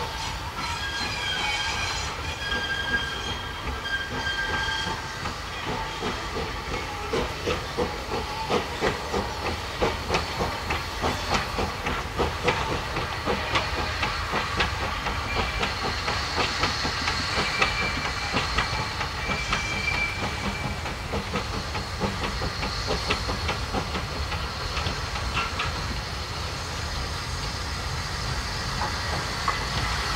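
Steam tank locomotive No. 6 Renshaw working a goods train towards the listener, with a regular beat about twice a second that grows clear after about six seconds, over steady steam hiss.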